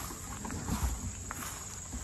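Soft footsteps and shuffling on straw-strewn dirt, with a few faint bumps and light clicks over a low outdoor background.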